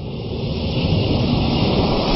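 A whoosh riser sound effect for an animated logo reveal: a deep rumbling rush of noise that builds steadily in loudness.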